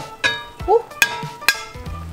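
Metal tongs clinking against a stainless steel frying pan while sausages are put into simmering tteokbokki sauce: three sharp clinks, the first ringing briefly.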